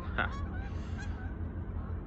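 Water birds calling: a loud, short honking call about a fifth of a second in, and fainter short calls scattered through the rest, over a steady low rumble of wind on the microphone.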